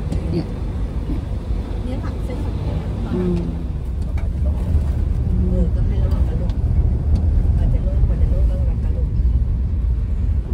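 A car driving along a road: a steady low engine and road rumble that grows louder about halfway through.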